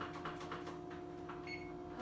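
Gas stove burner igniter clicking rapidly, about six clicks a second, stopping under a second in. A short high beep follows, over a steady low hum.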